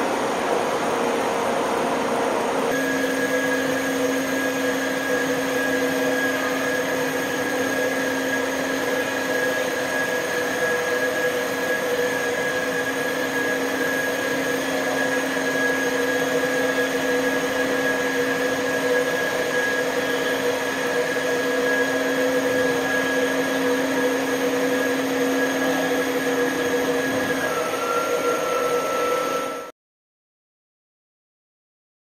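Ferry machinery running: a steady loud rumble and hiss. A steady whine comes in about three seconds in, then gives way to a single different tone near the end.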